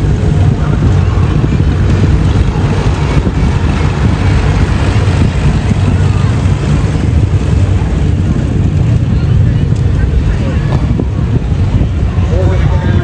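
Slow-moving parade vehicles' engines, a tractor and pickup trucks, running with a steady low rumble, with spectators' voices mixed in.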